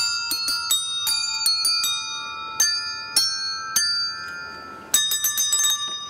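A set of tuned, coloured desk bells worn on the body, struck by hand one after another to play a tune. Each strike rings on, so the notes overlap. The strikes come quickly at first, slow to about two a second in the middle, then bunch into a quick run near the end.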